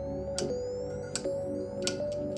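Clock ticking, about one tick every three-quarters of a second, over background music with held notes.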